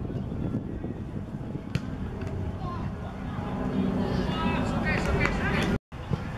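Outdoor football match sound: voices of players and onlookers over a steady low rumble, with shouting strongest in the second half. There is one sharp knock a little under two seconds in, and the sound drops out for a moment just before the end.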